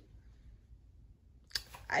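A short quiet pause with faint room tone. About one and a half seconds in comes a single sharp click, just before a girl starts speaking again.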